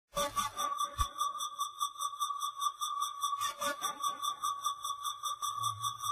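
Electronic intro sound effect: a steady high, sonar-like tone with higher tones pulsing quickly and evenly over it. Sweeping glides come near the start and again about three and a half seconds in, with a low thump at about one second.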